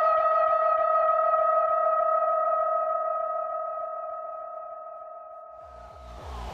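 A sustained electronic synth tone with a fast, even warble fades out slowly, as in a transition in a hardcore dance mix. Near the end a new track's fast kick drum beat comes in.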